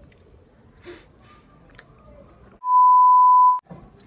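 A single steady, high electronic beep tone, about a second long, edited into the soundtrack over silence, the kind used to bleep out a word; it comes a little past halfway and is far louder than the faint rustling before it.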